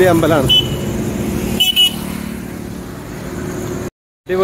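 Roadside traffic at night, with a vehicle engine humming nearby and two short horn beeps in quick succession a little under two seconds in. The sound cuts out completely for a moment near the end.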